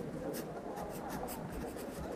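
Writing by hand on paper: a run of short, quick scratching strokes, over a faint murmur of distant voices.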